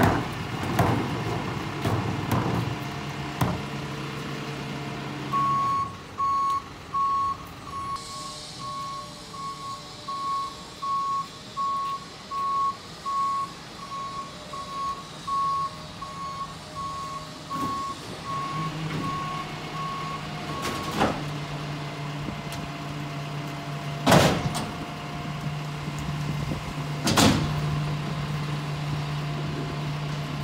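Rear-loader garbage truck's backup alarm beeping about once a second for some fifteen seconds over the truck's running engine. Sharp bangs of trash carts knocking against the hopper come at the start and twice near the end.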